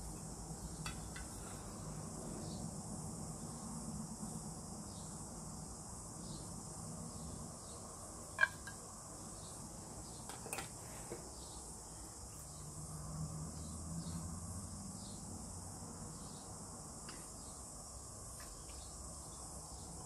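Faint, steady high-pitched insect chirring in the background. A faint low hum swells twice, a few seconds in and again past the middle, and there is one sharp click about eight seconds in.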